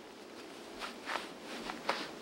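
Short scratchy rasps of a back in a cotton shirt rubbing up and down against tree bark, about four strokes in two seconds.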